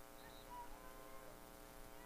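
Near silence: a faint steady hum with a few faint distant sounds.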